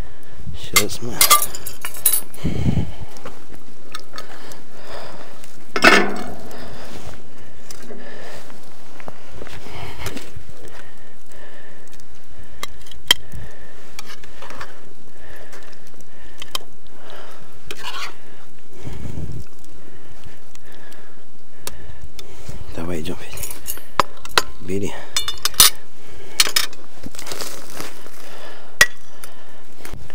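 Tableware clinking: a metal serving spoon knocking in a large steel pan, and china plates and coffee cups set down and touching. The sounds are scattered short clinks and knocks, with a cluster near the start and more near the end.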